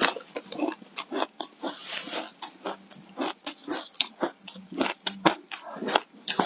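Close-up chewing and crunching of a mouthful of matcha-dusted ice, in a rapid, irregular run of crisp crunches several times a second.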